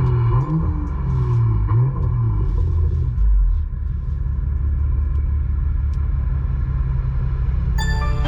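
Low vehicle rumble heard from inside a car's cabin. Engine tones rise and fall over the first three seconds, then settle into a steady low rumble.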